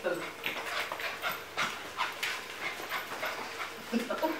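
Bearded Collie puppy running on a tiled floor: a rapid, uneven patter of claw clicks and scrabbling as it dashes about.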